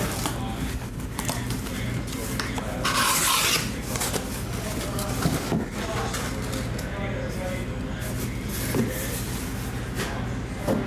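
Cardboard shipping case rubbing and scraping as it is opened and slid up off a stack of sealed trading-card boxes, with one loud rasping scrape about three seconds in.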